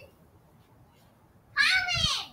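A cat meowing once, a high call that starts about one and a half seconds in and falls in pitch.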